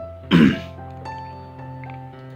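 A single short cough, about half a second in, over soft background music with sustained notes.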